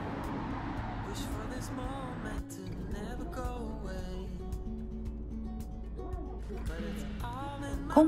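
Background music with a melody line. For the first two and a half seconds it sits over steady street noise, then after an abrupt cut over a low, steady rumble from inside a moving bus.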